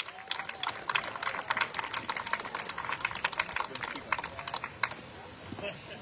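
Scattered applause from a small audience: separate, irregular hand claps for about five seconds that then die away, with faint crowd voices underneath.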